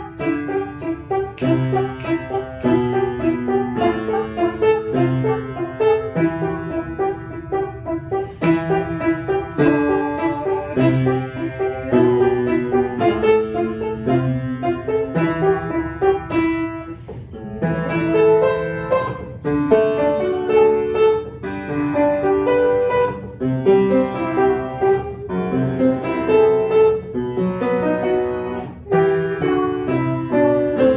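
Upright acoustic piano played solo: a continuous run of struck notes and chords, with one brief break about halfway through.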